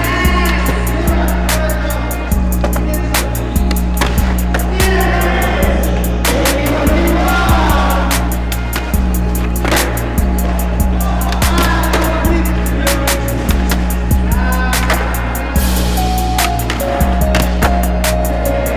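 Music with a steady beat and bassline, over skateboard sounds: urethane wheels rolling on concrete and the board's sharp pops and landings on tricks.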